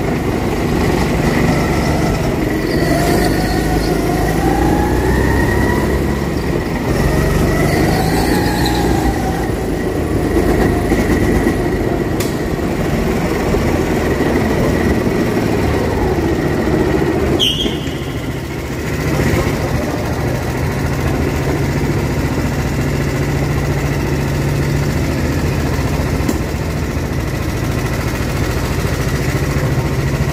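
Go-kart engine being driven around a track, its pitch rising and falling as it revs up and backs off. A sharp click comes a little past halfway, and after it the engine settles to a steadier, lower running hum like an idle.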